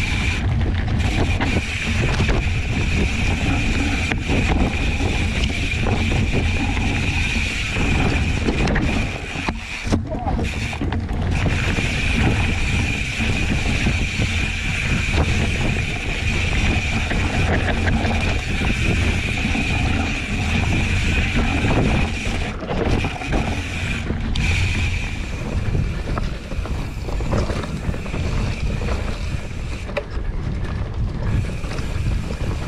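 Mountain bike riding fast down a dirt forest trail, heard from a camera mounted on the bike: wind buffeting the microphone over tyre rumble and rattling from rough ground. A steady high-pitched buzz runs through it and cuts out briefly a few times.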